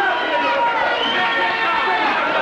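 Wrestling crowd shouting and yelling over one another, many voices at once.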